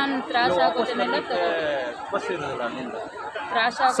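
Speech only: a woman talking with other voices overlapping, chatter of several people.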